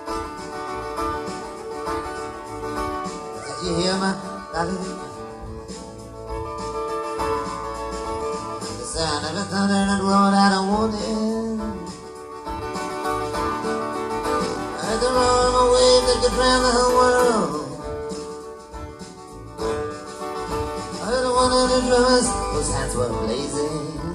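Live acoustic guitar strumming under a harmonica solo, its long wailing notes bending in pitch, as an instrumental break in an acoustic folk song. The sound is an audience recording made in a large hall.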